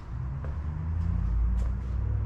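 A low, steady rumble: handling noise from the camera being moved and swung around.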